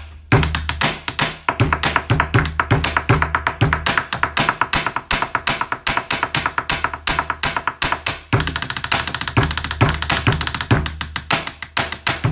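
Pen tapping: pens drummed rapidly on a wooden desktop in a fast, drum-like beat of clicks and knocks. There is a short break just after the start and another about eight seconds in, over a steady low bass underneath.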